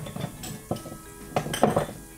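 Metal pots and utensils clinking and knocking in the kitchen, a few sharp clinks with the loudest cluster near the end, over faint background music.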